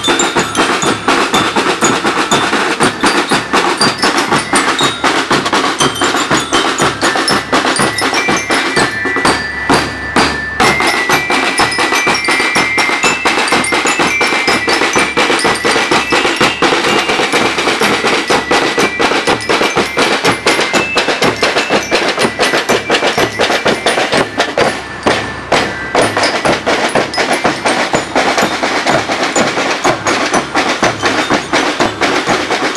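A marching band's snare drums and bass drum beating a steady, fast march rhythm, with bell lyres playing a high, bright melody over it through the middle.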